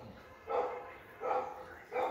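A dog barking: three short barks, a little under a second apart.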